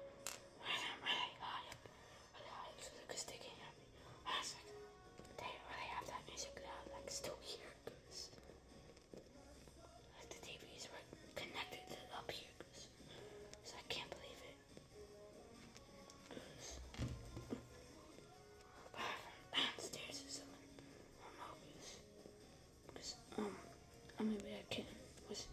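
A boy whispering, speaking quietly in short, broken phrases.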